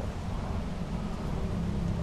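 Steady low background rumble with a faint even hiss; no distinct event stands out.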